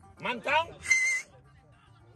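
A voice briefly, then a short, shrill whistle about a second in.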